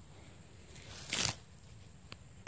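A brief rustle about a second in, over a quiet background.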